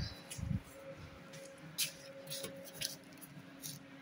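A few faint, scattered clicks and light knocks from bricks and a straight edge being handled, with a quiet steady hum underneath.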